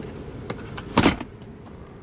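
Plastic instrument cluster housing clattering against the dash as it is pulled out of its opening: a faint click, then one short, loud knock-and-scrape about a second in.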